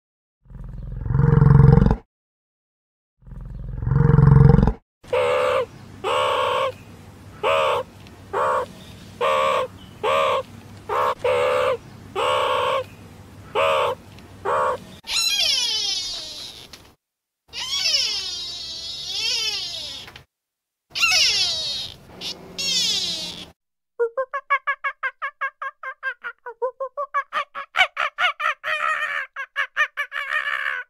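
A run of different animal calls: two deep bellowing grunts from a bison in the first five seconds, then about a dozen short calls in a steady rhythm, then several long calls gliding up and down in pitch, and near the end a fast chattering run of pulses.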